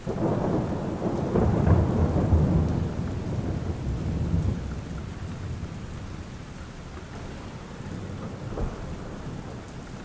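Thunderstorm: steady rain falling with a roll of thunder that starts suddenly, rumbles for about four seconds and fades into the rain, with a smaller rumble near the end.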